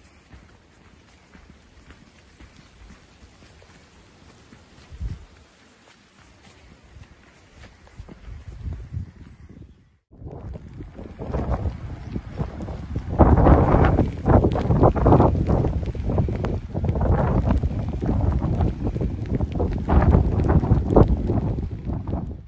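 Wind buffeting the microphone. It is faint at first, then after a sudden break about ten seconds in it comes in strong, uneven gusts.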